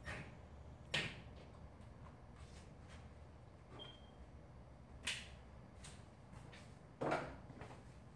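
Sharp knocks and taps from a banner being fixed to a wall by hand, against a low room hum. Three stand out: about a second in, about five seconds in, and near the end, with fainter taps between.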